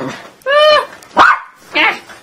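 A dog barking three times in quick short barks.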